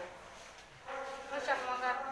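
A person's high-pitched voice, coming in about a second in after a quieter moment.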